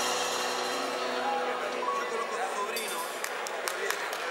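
The last notes of a live band ring out and fade, then audience voices call out and scattered hand claps begin about three seconds in, starting the applause.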